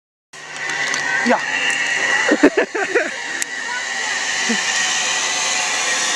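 Zip-line trolley pulley running along a steel cable: a steady whir that grows slowly louder as the rider comes down the line.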